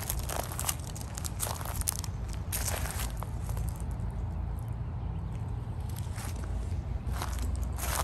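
Footsteps crunching on dry leaf litter and sandy ground, irregular scattered crackles, over a steady low rumble.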